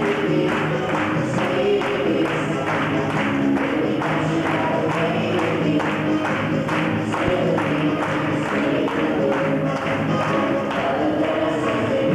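Fast Latin dance music with a steady, even beat.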